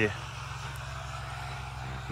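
A steady, unchanging low hum, the same background drone that runs under the surrounding speech.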